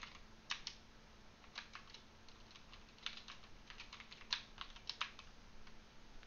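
Computer keyboard typing, faint keystrokes in short bursts with pauses between them.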